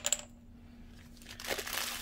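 A light click at the start, then a quiet stretch until about one and a half seconds in, when hands take hold of a block of clay partly wrapped in plastic and the plastic crinkles.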